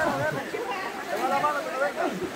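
Indistinct voices of several people talking and calling out at a moderate level, with no clear words.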